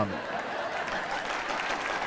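Studio audience applauding, a steady even clapping that holds at one level.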